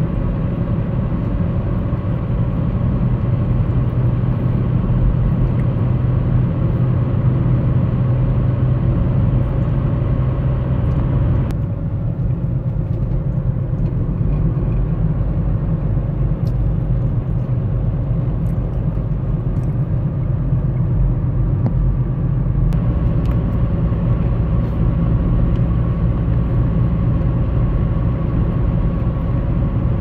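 Vehicle moving along an open road: a steady low rumble of road and running noise with a faint constant whine. About twelve seconds in the upper hiss drops away for around ten seconds, then returns.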